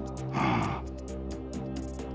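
Dramatic soundtrack music with sustained low tones and a fast, light ticking. About half a second in comes a short, sharp intake of breath.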